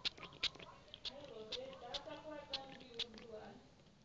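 Close-miked ASMR mouth sounds: wet clicks and smacks about twice a second, with a wavering, voice-like sound through the middle that fades toward the end.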